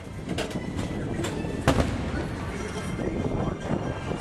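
Fireworks going off: several sharp bangs, the loudest about one and a half seconds in, over the steady rumble of the PeopleMover ride.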